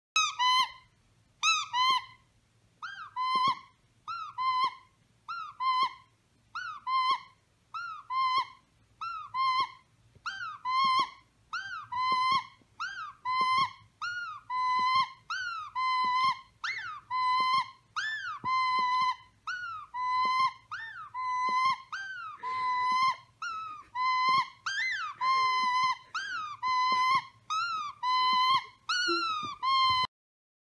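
A dog's squeaky plush toy squeaking over and over in a steady rhythm. The squeaks are high and all at about the same pitch, and they speed up from a little over one a second to about two a second.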